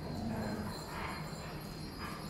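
Several large dogs walking about on a concrete floor, their claws tapping irregularly.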